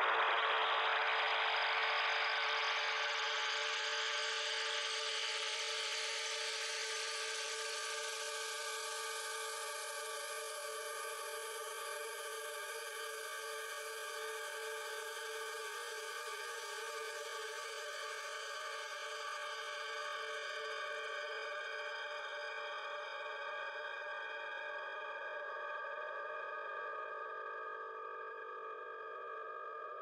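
Music: a held chord of many steady tones, like a sustained synthesizer pad, slowly fading out.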